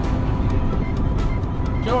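Truck engine and road noise heard from inside the cab while driving at a steady speed: a steady low rumble.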